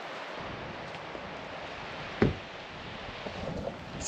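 Steady outdoor noise of breeze and gentle surf on a beach, with one brief thump about two seconds in.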